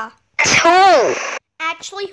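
A person sneezing once, a loud voiced "choo" about half a second in whose pitch falls away, after a rising "ah" just before.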